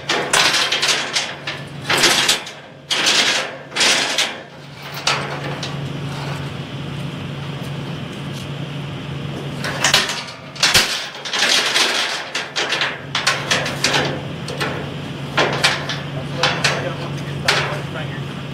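Volvo crawler excavator's diesel engine idling with a steady hum, under irregular metallic clanks and knocks from work at the joist stack, most of them in the first few seconds and again from about ten seconds in.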